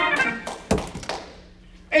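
A man's drawn-out voice trails off, then a single sharp thunk sounds a little under a second in, with a short ring after it.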